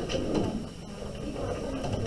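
A sheet of paper being handled and folded in half by hand, with soft rustling and sliding against the table.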